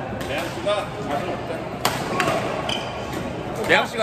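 Badminton racket hits on a shuttlecock: two sharp cracks about two seconds in, a fraction of a second apart, over voices in the hall. Near the end there is a louder gliding squeak.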